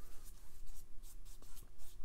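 Paintbrush loaded with wet watercolor paint stroking across watercolor paper: a run of short, scratchy brushing swishes.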